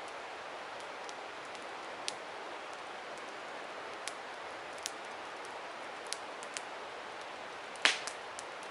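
Steady rushing of a nearby river with scattered sharp pops from a crackling campfire, one louder pop near the end.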